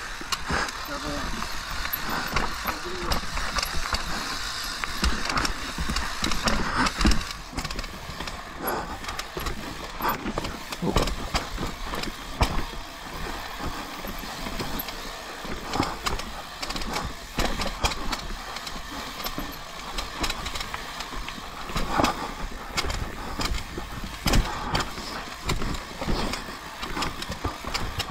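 A mountain bike riding down a rough dirt and rock trail: tyres rolling and scrabbling over dirt, roots and rock, with many knocks and rattles from the bike over the bumps.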